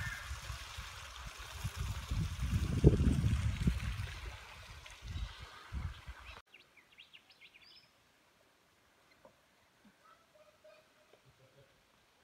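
Water trickling and splashing down small rock cascades, with low rumbling on the microphone. About six seconds in, the sound cuts suddenly to near silence with a few faint high chirps.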